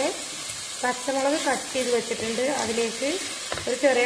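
Sliced onions sizzling in hot oil in a pot as a wooden spatula stirs them. A woman's voice talks over the frying for most of the stretch.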